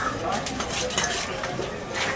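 A heavy cleaver-like knife cutting through a fish loin, its blade scraping and knocking on the wet cutting board in a run of short clicks and knocks, most of them in the first half.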